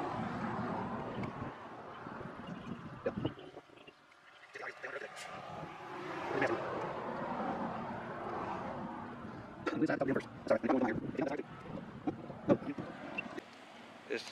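Outdoor roadside background of vehicle noise, with a few brief, indistinct voices about two-thirds of the way in.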